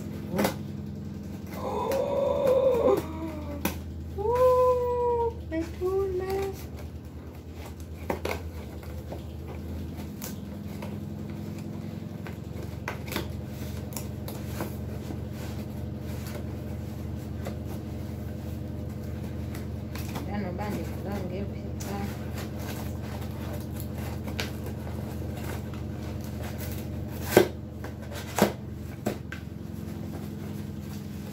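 Cardboard parcel and its packaging being handled and opened: scattered light clicks, taps and rustles over a steady low hum, with two sharp knocks near the end. A few seconds in, three short high-pitched voiced calls rise and fall.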